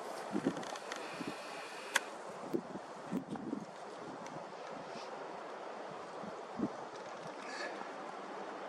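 Outdoor ambience of light wind on the microphone and faint rustling, with a few soft scattered clicks and knocks.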